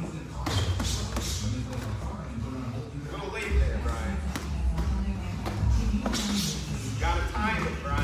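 Background music playing in a boxing gym, with scattered thuds and shuffles from two boxers sparring in the ring: gloved punches and footwork on the canvas.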